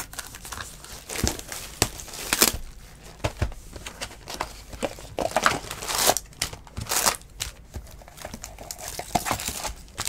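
Foil Bowman baseball card pack wrappers crinkling and crackling in irregular bursts as the packs are handled on the table.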